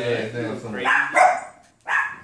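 Pet dogs barking, with a couple of sharp barks about a second in.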